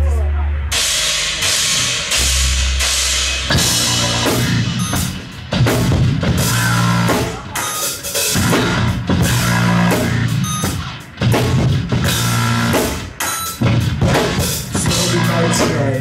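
Rock band playing live without vocals: drum kit pounding out a beat under distorted electric guitar and bass, loud throughout.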